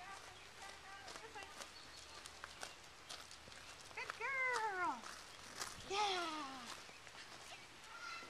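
Two drawn-out vocal calls that slide down in pitch, the first about four seconds in and the louder, a second weaker one about two seconds later. Faint crunching steps on gravel can be heard throughout.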